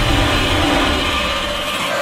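Cinematic trailer sound design: a dense rumble with a hiss over it, no beat, slowly fading under the title card.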